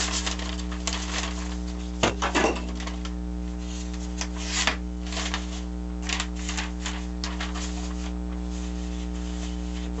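A sheet of paper being handled and laid in place, with irregular rustles and crinkles. A sharp tap comes about two seconds in and another just before five seconds, over a steady electrical hum.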